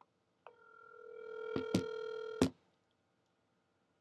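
Telephone ringback tone heard through a phone's speaker: one steady ring of about two seconds that grows louder, with a couple of handling clicks. The ring is cut off with a click as the call is answered.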